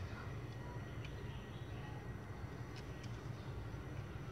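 Low steady room hum with a few faint, light clicks of metal parts being handled as a needle is pushed into a paint spray gun.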